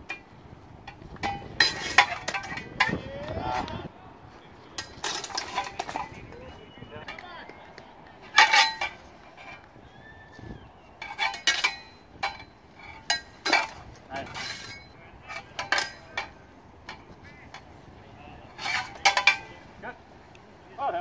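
Sword and messer blades clashing in a sparring exchange: repeated bursts of sharp metallic clinks, some with a brief ring, coming in clusters of several quick strikes with pauses between.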